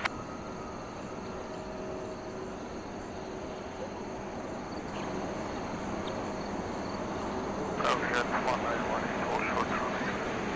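Distant jet airliner engines running at low power on the airfield, a steady rush that grows slowly louder through the second half.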